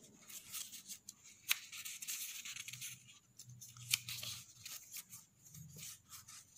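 Soft rustling of the pages of a small paper instruction booklet being handled and turned, with two light ticks about a second and a half and four seconds in.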